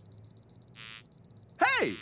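Handheld predator-radar gadget sound effect: a fast-pulsing, high-pitched electronic beep, signalling the device is working. A short hiss cuts in a little before the middle.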